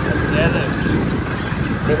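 Motor two-wheeler running steadily while being ridden, a constant engine hum under wind and road noise.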